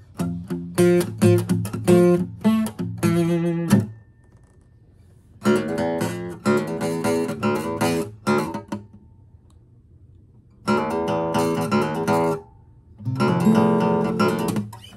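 Acoustic guitar strummed in four short bursts of chords, with pauses of a second or two between them.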